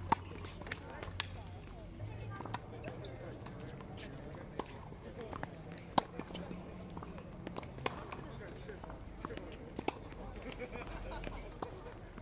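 Tennis rally: a racket strikes the ball with a loud sharp pop at the start and again about six seconds in. Fainter pops of the far player's shots and the ball bouncing on the hard court come in between.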